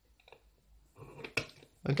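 Faint scratching and light clicks of a sharp pointed scribing tool tracing a hole outline along the edge of a 3D-printed plastic jig onto an ABS project box, with one sharper click about one and a half seconds in.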